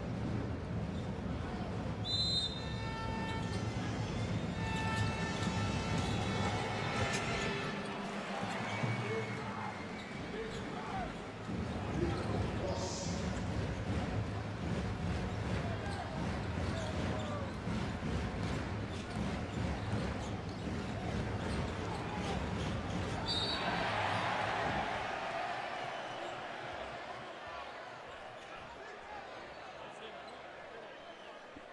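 Basketball game sound in an arena: the ball bouncing on the hardwood court amid crowd and court noise. Two brief shrill tones come about 2 seconds in and again around 23 seconds, and the crowd noise swells briefly just after the second.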